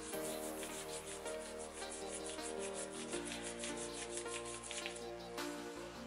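A hand rubbing a wax strip pressed onto the skin of the underarm, quick repeated strokes several times a second that stop about five seconds in. Background music with held chords plays underneath.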